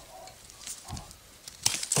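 Bypass pruning secateurs cutting blackcurrant stems: a few faint clicks, then near the end a sudden sharp snip followed by a crackling rustle of twigs and dry leaves.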